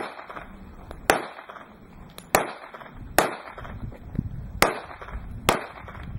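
Five pistol shots fired at uneven intervals of about one to one and a half seconds, each followed by a short echo.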